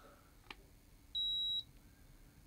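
Handheld infrared thermometer giving one steady high beep about half a second long, a little past a second in, as it takes a temperature reading. A faint click comes shortly before it.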